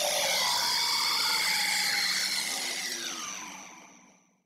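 An edited-in sound effect for an on-screen card reveal: a loud rushing hiss with a few faint tones gliding through it, fading away over the last second.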